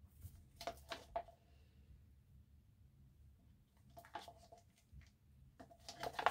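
Near silence, broken by a few faint clicks and taps of plastic mixing cups being handled as epoxy resin is poured into the hardener cup, in two small clusters.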